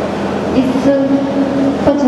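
Nagi harmonium played with the bellows pumped, giving a dense sustained reed drone; about half a second in a single steady held note comes through clearly and continues.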